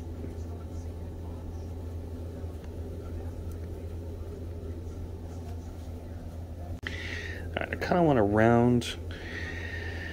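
A steady low hum, then about seven seconds in a man's voice makes a drawn-out sound that falls in pitch, with no clear words.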